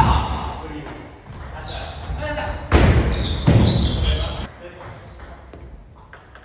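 A table tennis ball struck sharply right at the start, then scattered ball bounces and voices echoing in a large hall, loudest about three to four and a half seconds in.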